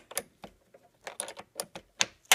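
A string of irregular clicks from a wrench loosening the 10 mm nut on a car battery's negative terminal clamp.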